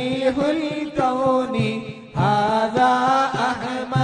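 Arabic moulid chanting: voices singing a devotional praise of the Prophet Muhammad in a melismatic line over a steady low beat. The chant breaks off briefly near the middle, then resumes.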